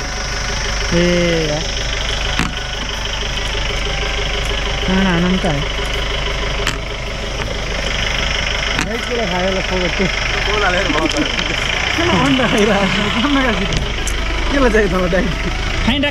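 A few sharp clicks of a carrom striker hitting the pieces on a wooden carrom board, over a steady low engine hum and people talking.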